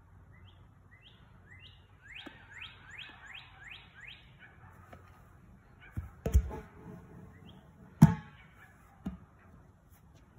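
A songbird singing a run of slurred whistled notes that speed up to about three or four a second, then stop about four seconds in. Then come a few dull thuds of a ball dropping onto grass, and a sharp knock about eight seconds in, followed by a smaller one a second later.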